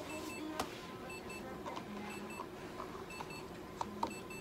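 Electronic beeping: short high beeps, mostly in pairs, repeating about once a second, with a couple of sharp clicks from handling on the table.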